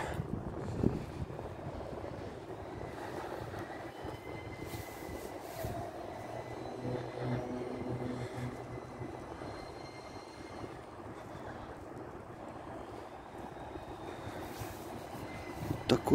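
Steady hum of city traffic from a nearby avenue. A faint engine drone swells and fades around the middle.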